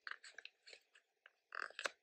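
Faint crinkling and small ticks from a paper sticker sheet as fingernails pick and peel a small sticker off it, with a louder crackle near the end.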